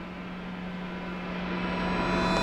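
A steady low hum with a high, thickening whine and hiss swelling steadily louder: a tension-building drone or riser sound effect laid under the scene.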